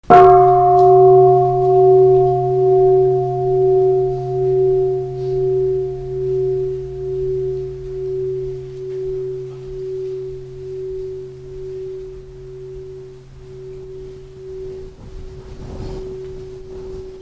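A bowl-shaped meditation bell struck once, then ringing with a long wavering tone that slowly fades.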